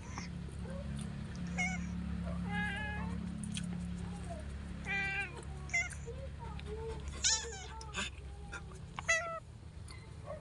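A cat meowing again and again, about half a dozen short meows, some bending up and down in pitch, over a steady low hum.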